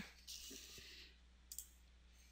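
Near silence with a single faint computer mouse click about one and a half seconds in.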